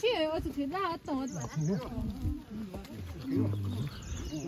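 People talking: voices of the walkers, with no other sound standing out.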